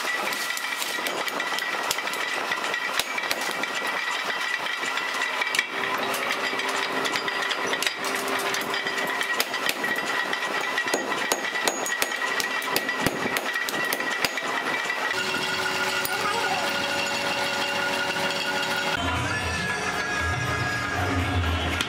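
Hand hammer striking a red-hot horseshoe on a steel anvil: a quick, irregular run of sharp metal-on-metal blows with a steady ringing tone beneath, ending about three-quarters of the way through.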